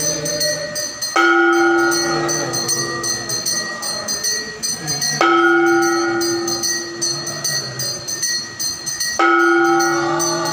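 Large temple bell struck three times, about four seconds apart, each stroke ringing on and fading, over continuous fast metallic jingling of small bells during aarti worship.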